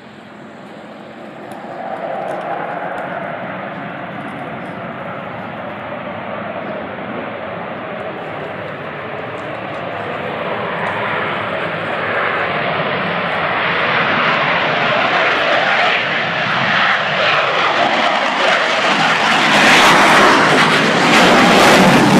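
Piston engines of single-engine propeller airplanes running, the sound building steadily and loudest near the end as a turning propeller comes close.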